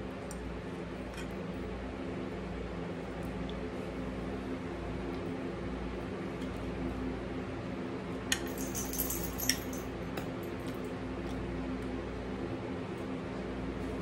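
Steady low hum of room tone, with a short run of sharp clinks of a metal fork against a plate about eight to nine and a half seconds in.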